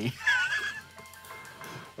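A man laughing, a high, wavering giggle of about half a second near the start.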